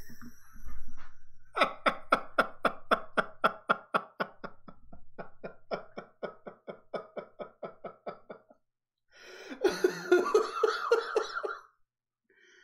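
A man laughing hard in a long run of short, rhythmic laughs, about four or five a second, that gradually fade. After a brief pause near the end he breaks into a second, breathier outburst of laughter.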